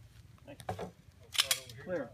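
Two sharp clicks about a tenth of a second apart, about a second and a half in, between a few short spoken words.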